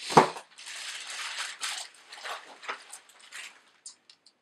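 Plastic bubble wrap crinkling and rustling as it is handled and pulled off a wooden flute, with one loud, sharp crackle near the start.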